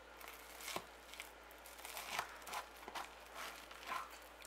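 Metal serving spoon scooping baked bread and butter pudding out of a metal cake tin: faint scraping and soft tearing of the baked bread, with several light clicks of the spoon against the tin.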